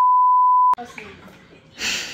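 A single steady test-tone beep, a pure sine tone of about one second, that starts and cuts off abruptly, used as an edited-in sound effect. Quiet room sound follows.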